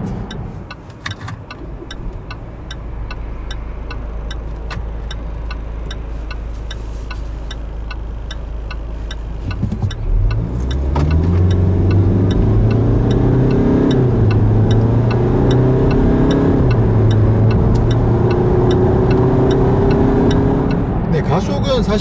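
Range Rover Evoque's 2.0-litre Ingenium four-cylinder diesel heard from inside the cabin. It is a low steady hum for about ten seconds, then the engine pulls under acceleration, its pitch rising and falling back at each upshift of the automatic gearbox. A faint regular ticking runs underneath.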